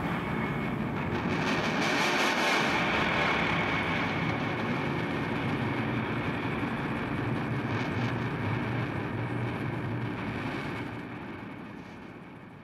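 A sustained rumbling, hissing wash of sound with a faint steady high tone, left ringing after the band's final hit at the close of the track. It fades out near the end.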